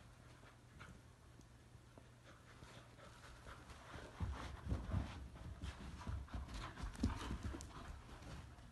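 Two dogs playing tug of war with a rope toy: scuffling and irregular thumps of paws and bodies, quiet at first and getting louder and busier from about halfway.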